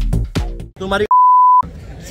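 Loud electronic dance music with a heavy beat over a concert sound system, cut off abruptly less than a second in. A loud steady bleep at one pitch follows for about half a second, the kind of tone dubbed in during editing. Then crowd chatter and voices follow.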